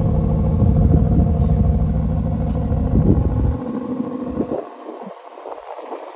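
Aston Martin DB11 engine idling, a steady low note heard close to the rear exhaust outlets. About three and a half seconds in it drops away sharply, leaving a faint hum.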